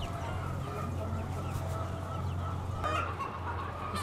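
A flock of young Lương Phượng pullets clucking and calling softly, with one clearer call about three seconds in, over a steady low hum.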